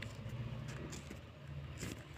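Colored pencil being twisted in a small handheld plastic sharpener, giving a few faint scraping ticks over a low steady hum.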